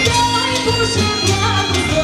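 Live instrumental Macedonian folk band music: a clarinet plays a winding melody over keyboard bass and drums.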